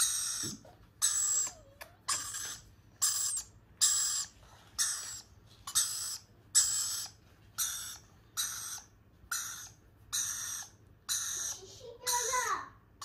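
Rainbow lorikeet calling over and over, a short shrill call about once a second in an even rhythm.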